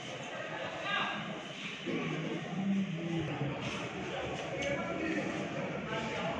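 Indistinct voices of people talking in a large room, with a steady background hum of the hall.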